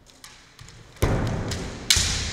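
Kendo attack on a wooden floor: a heavy stamp of the lunging foot about a second in, then a sharp crack of a bamboo shinai striking just before the end.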